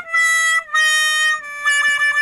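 A short musical sting of sustained reedy notes, each held about two thirds of a second and stepping slightly lower in pitch than the last.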